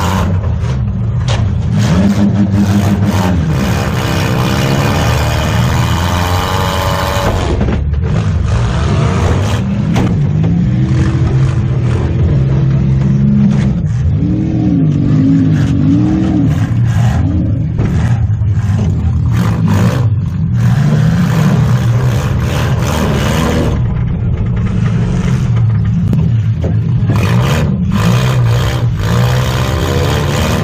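Demolition derby car's engine heard from inside the stripped cab, revving up and down again and again, with repeated knocks and metal clatter as the car hits and scrapes other cars.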